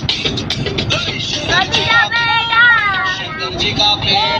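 A song playing: a beat with a high singing voice that comes in about a second and a half in and holds long, gliding notes.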